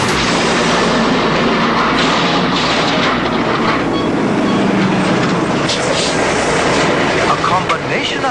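Loud, steady rumbling and clattering cartoon sound effects of concrete rubble crashing down, with a voice near the end.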